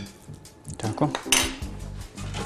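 A metal spoon clinking and scraping against a plate while mixing a soft filling of grated potato, cheese and chopped meat. It is quiet at first, then there are a few clicks and one sharp scrape just past the middle.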